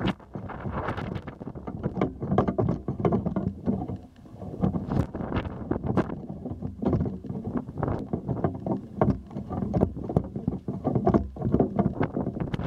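Gusty wind buffeting the microphone of a camera raised on a pole, with irregular knocks and rustles of handling as the pole is moved about.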